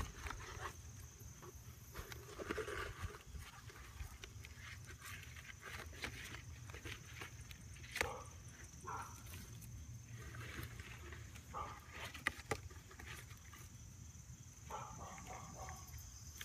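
Faint rustling and scattered light clicks in grass and dry straw, over a steady high trill of night insects.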